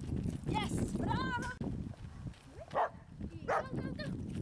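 Whippet and handler running on a gravel track, footfalls crunching in a few short strokes, under a steady low rumble of wind on the microphone. A high, wavering call sounds about a second in.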